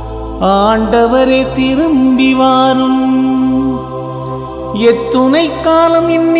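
A voice singing a Tamil responsorial psalm in a slow line with sliding, wavering notes, over steady instrumental accompaniment. One phrase is held for about three seconds, then there is a brief pause before the next phrase begins.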